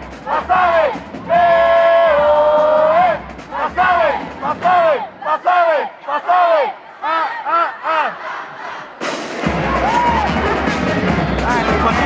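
Marching band members shouting a chant in unison: long held calls, then a string of short, arching shouts about twice a second. About three-quarters of the way through, the band comes in playing loudly with drums.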